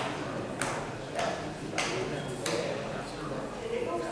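Four sharp knocks, roughly every half second to second, over indistinct voices echoing in a large hall.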